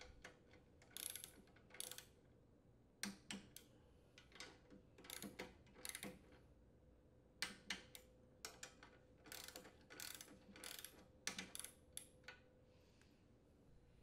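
Ratchet head of a socket torque wrench clicking faintly in short runs of a few clicks each, as the aluminium valve cover bolts of a Honda GCV160 engine are tightened.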